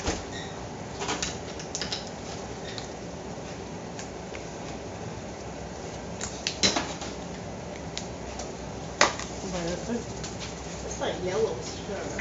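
Kitchen clatter of pans and utensils: a few sharp knocks, the loudest about six and a half and nine seconds in, over a steady hiss.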